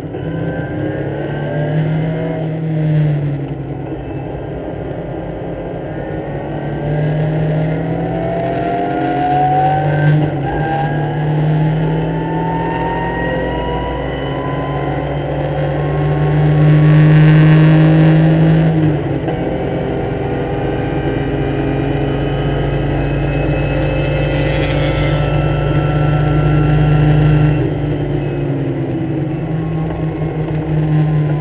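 BMW race car's inline-six heard from inside the cabin under full throttle, the revs climbing through the gears with brief breaks at each upshift and reaching about 5,800 rpm. Near the end the engine note drops as the throttle lifts.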